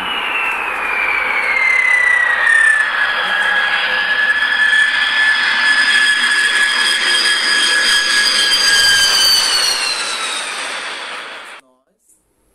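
B-2 Spirit stealth bomber's four GE F118 turbofan engines, a loud jet whine over a steady rush. The whine falls in pitch over the first few seconds, then holds steady, and the sound cuts off suddenly just before the end.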